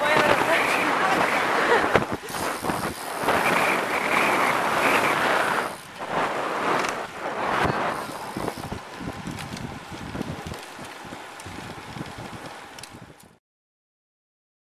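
Wind rushing over the microphone of a camera carried on a moving bicycle, a loud steady rush that eases off over the second half. It cuts off suddenly shortly before the end.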